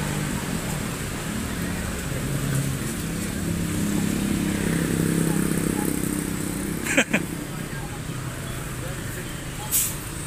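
Mercedes-Benz coach's diesel engine idling with a steady low hum that swells slightly midway. A short sharp sound comes about seven seconds in and another near the end.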